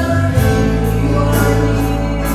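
Live worship band performing a slow worship song: several singers sing together in held notes over keyboard, bass and guitar, with light cymbal strokes from the drum kit.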